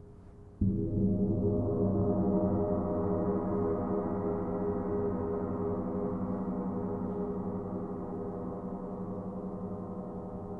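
Large gong struck once with a padded mallet about half a second in. The deep ringing swells over the next second or so as a shimmer of higher overtones builds, then the gong rings on and slowly fades.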